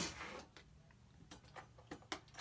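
A few faint, sparse clicks and ticks in a quiet room.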